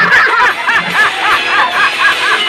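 Men laughing hard, a quick run of ha-ha sounds about five a second, over a rock song's backing track.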